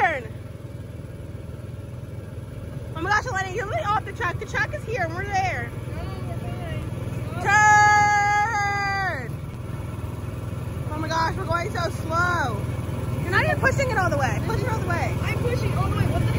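Small engine of an amusement-park antique-car ride running steadily under voices calling out. About seven and a half seconds in, a loud held 'rrrr' tone of steady pitch lasts about a second and a half.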